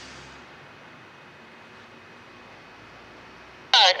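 Faint steady background hum of an idling engine in the open air; near the end a two-way radio voice cuts in suddenly and loudly.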